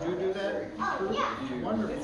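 Background chatter of several voices in a room, children's voices among them, talking over one another.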